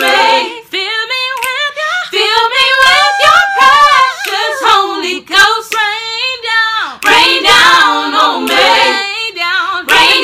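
Unaccompanied gospel singing: high voices sliding through long, ornamented wordless runs with vibrato. About seven seconds in, a fuller, busier passage begins.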